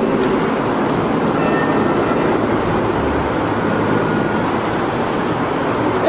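Steady rushing background noise, about as loud as the speech around it, with no distinct events.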